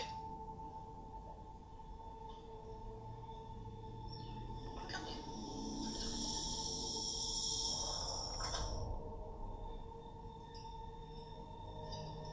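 Horror film trailer music: drawn-out steady tones, with a bright, high shimmering layer that swells about five seconds in and drops away around nine seconds.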